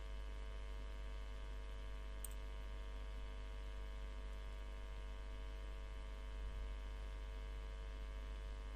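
Steady electrical mains hum: a low drone with a stack of many steady tones above it, unchanging throughout.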